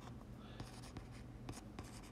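Stylus writing on a tablet screen: faint scratching with light ticks as strokes are drawn, over a steady low hum.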